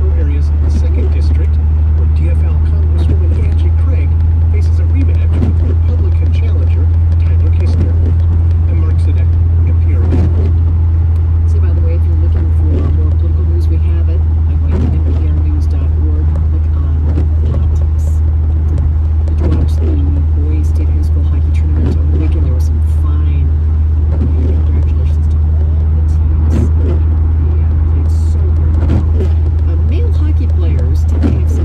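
Steady low drone of a car's engine and tyres on a wet freeway, heard inside the cabin, with a muffled voice talking over it.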